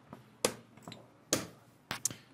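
Wooden chess pieces set down on the board and the chess clock's button pressed in fast play: three sharp clicks, the second about a second after the first and the third half a second later, with fainter knocks between.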